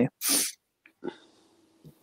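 A person's short breath snorted out near a microphone, hissy and brief, about a quarter-second in, followed by a faint tick about a second in.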